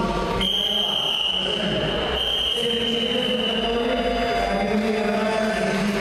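A long, high, steady signal tone starts just under half a second in and lasts about three seconds. It halts the wrestling bout and stands over the voices of spectators.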